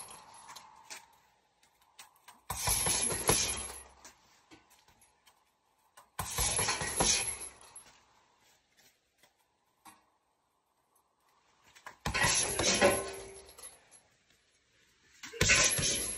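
Boxing gloves landing flurries of punches on a 65 kg heavy bag, with the hanging chain rattling: four combinations in all, each a quick cluster of hits lasting about a second and a half, with pauses of a few seconds between them.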